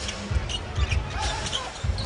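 A basketball being dribbled on an arena's hardwood court: a run of low thumps, several a second at first and then two more near the end, over crowd noise, with a few short high squeaks.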